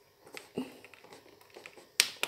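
A few faint, short clicks and handling noises from a plastic light stick as a finger presses its button.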